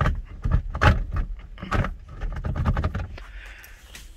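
Manual gear lever of a 2001 Hyundai Tiburon being worked by hand, making a string of irregular clicks and clunks from the lever and shift linkage. A short rustling noise follows about three seconds in.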